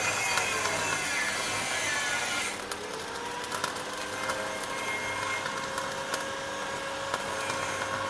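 Stick-welding arc cutting through a steel window-frame section: a steady crackling, sizzling arc with a faint steady hum under it. About two and a half seconds in, the high hiss thins and sharper separate crackles come through.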